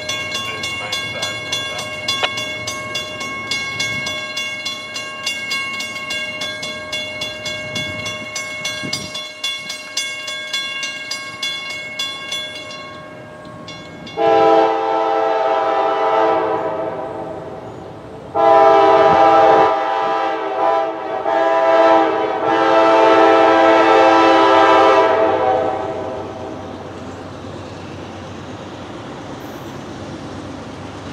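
Diesel locomotive's five-chime K5LA air horn sounding loud, chord-like blasts in the long, long, short, long pattern used at grade crossings, starting about halfway through.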